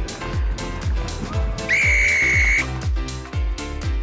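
Background music with a steady drum beat, and a little under two seconds in a single long, steady whistle blast lasting about a second, the referee's whistle on the rugby pitch.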